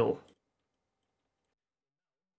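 The last syllable of a narrator's word, cut off about a third of a second in, followed by dead digital silence.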